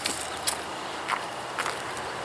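A few footsteps on garden stepping stones, short soft ticks about half a second apart, over a faint steady outdoor hiss.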